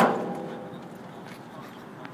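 A single sharp knock right at the start with a short ringing tail that fades within about a second.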